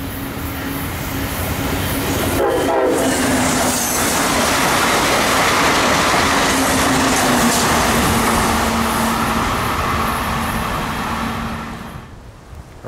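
Brightline passenger train passing close at speed. The rumble of its wheels swells over the first couple of seconds, stays loud, and fades near the end. A steady horn tone sounds through the pass and drops slightly in pitch as the train goes by.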